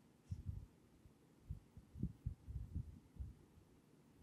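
Faint, irregular low thumps of handling noise from a hand-held phone as it films.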